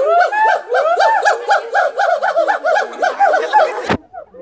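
Hoolock gibbon calling: a rapid, even series of whooping notes, each rising and falling in pitch, about four a second. The calls cut off abruptly just before the end.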